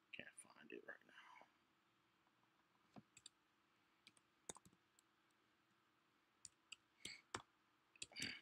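Faint computer clicks and keystrokes from a mouse and keyboard, scattered singly and in short groups as a word is typed into a search box. A brief low murmured voice comes in the first second or so.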